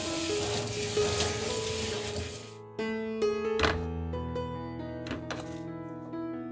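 Gentle background piano music throughout. Over the first two and a half seconds there is the steady hiss of tap water running into a stainless steel sink over boiled broccoli in a mesh strainer, and it cuts off suddenly. Later come a couple of short knocks.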